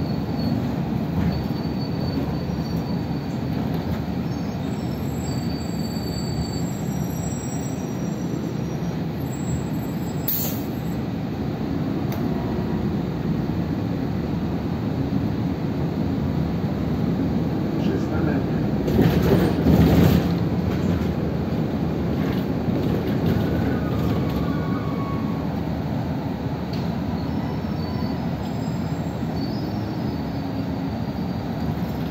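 Inside a moving city bus: a steady low rumble of engine and road, with a few short faint high squeals and a louder surge about two-thirds of the way through.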